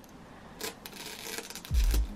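Thin clear plastic protective film being peeled off a monitor's chrome logo: faint crinkling and rustling with small clicks. A deep thump comes near the end.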